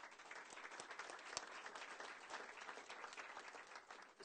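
Applause: many people clapping, dying away near the end.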